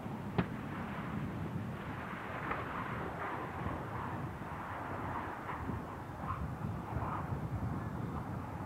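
Steady outdoor rushing noise of wind and open-air ambience at the runway, with a single sharp click about half a second in and a few faint scattered sounds in the middle.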